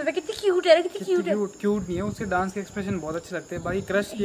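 People's voices talking, over a thin, steady, high-pitched insect chirring.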